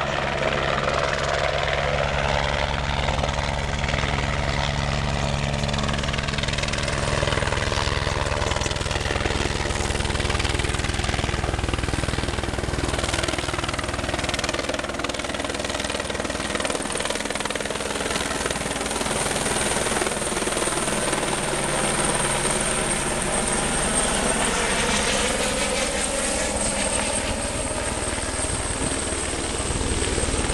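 Helicopter flying close by: a steady rotor chop with a high turbine whine that grows stronger from about eight seconds in.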